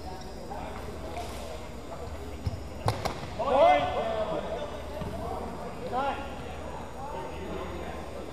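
Two sharp knocks less than half a second apart, about two and a half seconds in, from a longsword fencing exchange. Right after them comes a loud shouted call that stops the bout, with further shouts a couple of seconds later, ringing in a gym hall.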